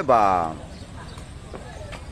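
A man's loud, drawn-out call in the first half second. Then the steady murmur of an outdoor crowd, with two faint knocks near the end as the rattan sepak takraw ball is kicked.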